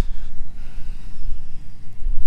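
Low, uneven rumble of wind buffeting the microphone, with no other clear sound above it.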